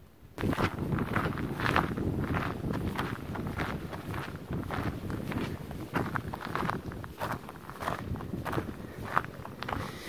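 Footsteps crunching on loose gravel at a steady walking pace, about two steps a second, starting about half a second in.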